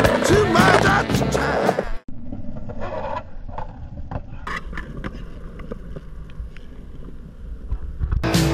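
Skateboard wheels rolling on concrete, with several sharp clicks and knocks from the board. For about the first two seconds a rock song plays, then it cuts off suddenly.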